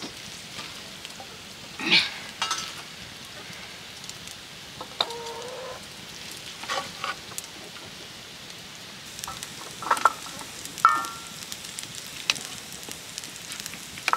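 Noodles sizzling in a wok as they are stir-fried, a metal ladle scraping and clinking sharply against the pan every few seconds.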